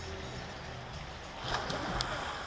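Steady low rumble of outdoor background noise by a hotel swimming pool, with a brief faint rise near the end.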